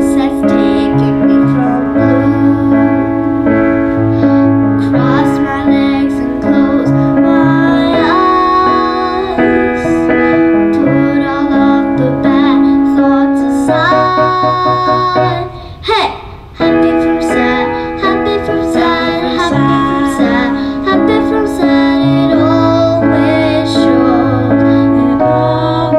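A young girl singing an original song over electric keyboard accompaniment, with a brief drop in the music about two-thirds of the way through.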